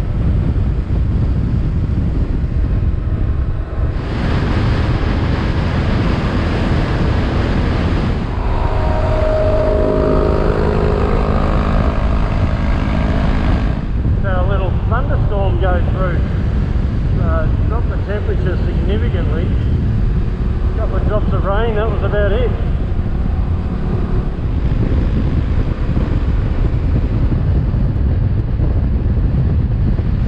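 Heavy wind rush on the microphone of a motorcycle at road speed, with the bike's engine running underneath. The sound changes abruptly a few times where the footage is cut.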